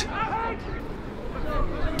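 Pitch-side football ambience: faint shouts from players on the pitch over a steady low rumble of wind on the microphone.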